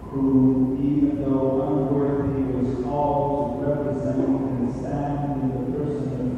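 Voices chanting a slow sung melody, each note held for about a second before moving to the next.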